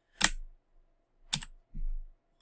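Two computer keyboard key presses about a second apart, advancing bullet points on a presentation slide, followed near the end by a soft low thump.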